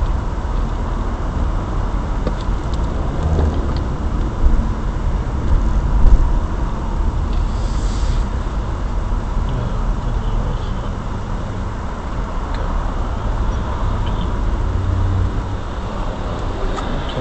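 Steady low rumble of a car's engine and road noise heard inside the cabin through a dash cam's microphone, while driving in slow, dense freeway traffic. A faint steady high tone runs underneath, and there is one louder bump about six seconds in.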